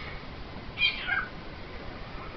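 Cockatiel giving one short call about a second in, a high note that drops in pitch.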